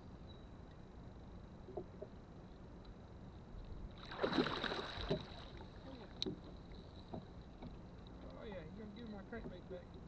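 A splash at the water's surface about four seconds in, lasting about a second, as a hooked fish thrashes on the line near the boat.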